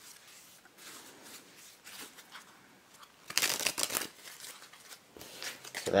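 A soft-stock Bicycle deck of playing cards being handled with faint rustling, then a quick burst of rapid card clicks, like a riffle shuffle, lasting under a second about three and a half seconds in.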